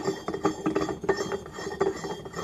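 Steel spindle with 1½-inch, 8-thread end being screwed by hand into a lathe-chuck adapter: rapid, irregular metallic clicking and scraping of the threads, with a slight metallic ring.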